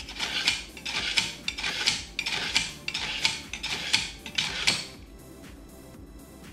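Kitchen knife drawn repeatedly through a pull-through knife sharpener: a raspy grinding stroke about twice a second, stopping about five seconds in. The blade is being honed from somewhat dull to sharper.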